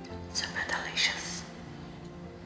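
Soft, freshly baked bread torn apart by hand: a short rough tearing noise, about a second long and peaking twice, over background guitar music.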